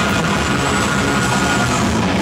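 Heavy metal band playing live, loud, with electric guitars to the fore and no break in the playing.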